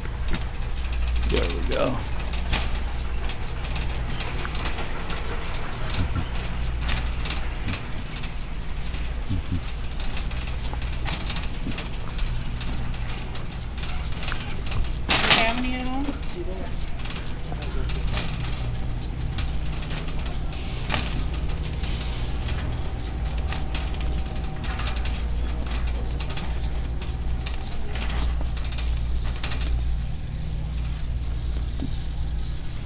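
Shopping cart rolling over a concrete floor, its wire basket and wheels rattling in a steady run of small clicks over a low steady hum. One brief louder sound comes about halfway through.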